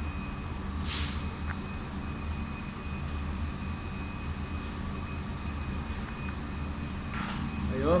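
Steady low rumble of running machinery with a faint, steady high whine above it. A brief rustle about a second in.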